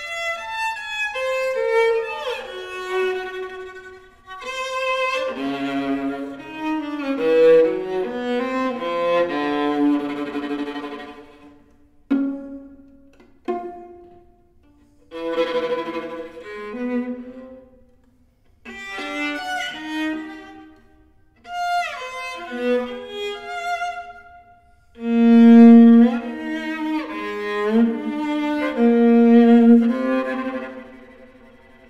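Solo viola playing a modernist sonata movement: bowed phrases with wide leaps between high and low notes, broken by short pauses.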